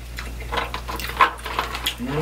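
A string of short cracks and clicks from snow crab leg shells being broken apart by hand, the sharpest about a second in.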